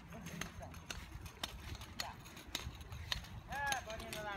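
Scattered light clicks and ticks at irregular spacing, with faint children's voices in the background and a child calling out briefly near the end.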